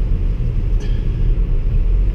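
Steady low rumble of a car's engine and tyres heard from inside the cabin as the car rolls slowly.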